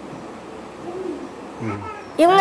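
Soft background hiss with a short, hoot-like vocal sound about a second in and a brief low voice sound near the end.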